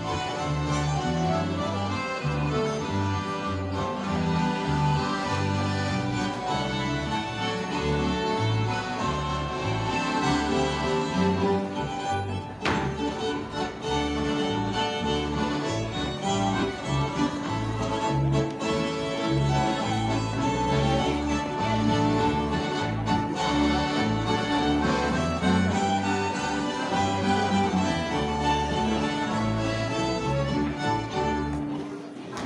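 Live Swedish old-time dance music (gammeldans) played by a band led by fiddles, with a steady bass line underneath. A single sharp click cuts through the music about halfway through.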